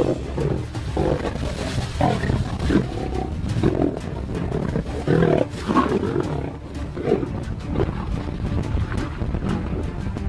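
Male lion growling and roaring in a string of short, loud bursts as it charges, over background music.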